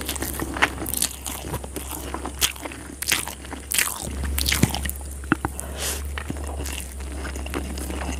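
Close-miked eating sounds: fingers squishing and mixing curry-soaked rice on a plate, with sharp crunching bites and chewing breaking in irregularly throughout.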